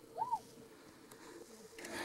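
A faint single short bird call, rising then falling in pitch, about a quarter second in.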